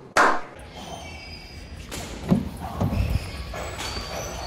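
A sharp hit with a brief ringing tail just after the start, then a low rumble and a few dull thumps and knocks, like handling noise around a vehicle door.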